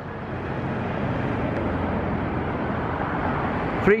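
Road traffic: a car passing by, a steady rush of tyre and engine noise that swells about a second in and holds.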